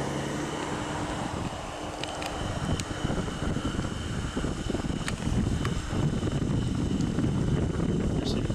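Low, fluctuating rumble of wind and handling noise on the microphone of a camera worn around the neck, with a nearby vehicle engine running underneath and a few faint clicks.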